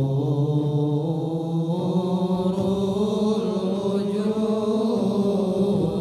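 Men's voices chanting a devotional Arabic syair in long, drawn-out held notes, the pitch stepping up about two seconds in. The singing fades out at the very end.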